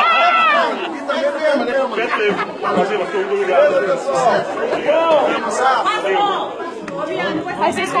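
Several men's voices talking over one another in lively chatter, with laughter.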